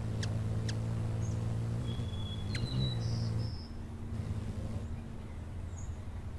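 Hummingbird hovering at a feeder: a steady low hum of beating wings for about three and a half seconds, then fading, with a few brief high chirps and a couple of sharp clicks.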